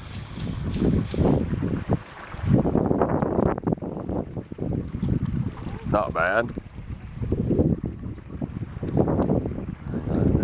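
Wind buffeting the microphone over indistinct voices, with a short voice-like sound sliding in pitch about six seconds in.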